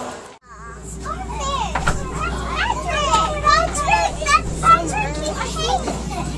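A crowd of overlapping voices, many of them children chattering and calling out, over a steady low hum in an enclosed ride cabin. The sound drops out briefly about half a second in at an edit, then the chatter builds.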